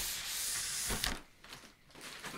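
Cardboard keycap box sliding out of a plastic air-column cushion bag: a steady rubbing hiss of plastic against the box for about a second, then fainter rustling.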